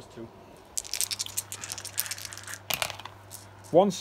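A handful of six-sided dice rattling in a hand and then tumbling onto the gaming board: a quick run of clicks and clatters lasting about two seconds, starting about a second in.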